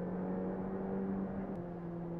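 Ferrari Challenge Evo racing car's twin-turbo V8 heard from inside the cockpit, holding a steady, even note, with a faint click about one and a half seconds in.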